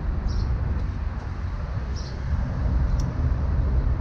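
Steady low rumble of outdoor background noise, with one short click about three seconds in.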